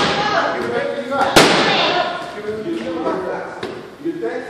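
A boxing glove landing a punch: one sharp smack about a second and a half in, with a short echo, over people talking.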